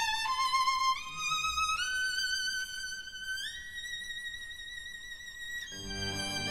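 Orchestra violin section playing a soft melody in unison, climbing note by note with vibrato to a long held high note. Just before the end, the rest of the orchestra comes in underneath.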